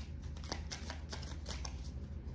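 Tarot cards being shuffled by hand: an irregular run of short card slaps and flicks, several a second, over a steady low hum.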